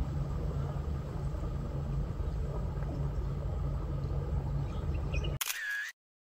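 Steady background noise with a low hum, cut off abruptly about five seconds in by a short camera shutter sound effect marking a photo change.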